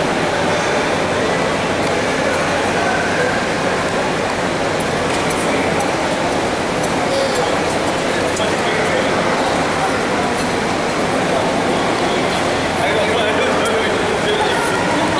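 Crowd hubbub in a large indoor hall: many voices talking over one another without clear words, with a few faint clicks.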